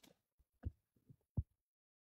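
Two soft, low thumps about two thirds of a second apart over quiet room tone: handling bumps on a phone held close to the microphone.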